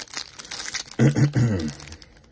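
Foil trading card pack wrapper crinkling and tearing as it is pulled open by hand, with a short low vocal sound about a second in.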